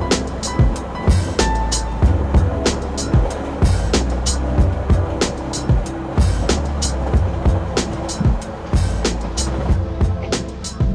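Background music with a steady drum beat over a deep bass line.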